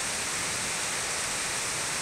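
Water spilling over a dam's overflow spillway at a low discharge of about 0.1 square metre per second per metre of crest: a steady, even rush of falling water.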